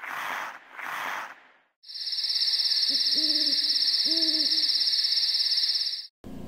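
Night-ambience sound effect: an owl hooting twice, a second apart, over a steady, fast-pulsing high insect trill. Three soft whooshes come before it.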